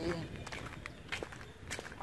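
Footsteps on a dry dirt path littered with dead leaves and twigs: a few faint, scattered steps and rustles after a voice trails off.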